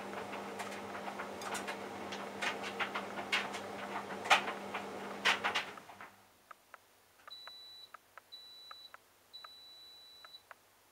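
Hotpoint Aquarius+ TVF760 vented tumble dryer at the end of its cycle: the drum turns with a steady hum and clicks and knocks from the load, then stops about six seconds in. Three high beeps follow, the last one longer, signalling that the program has finished.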